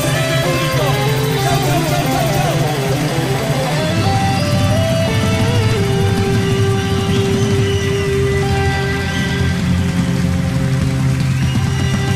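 Live rock band playing an instrumental passage over bass and drums. A stepping melody comes first, then a single long held note from about six seconds in.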